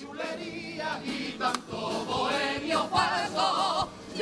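A Cádiz carnival group singing together in chorus, many voices with a wavering vibrato, over strummed guitar accompaniment.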